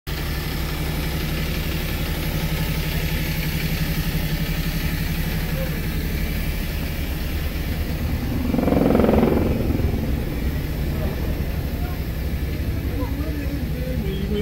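Steady low hum of parked city buses running at the kerb, with a louder swell lasting about a second around nine seconds in.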